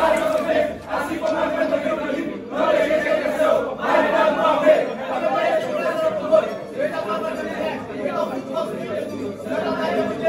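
A team of men in a huddle speaking together in unison, many voices at once in short phrases, echoing in a tiled room.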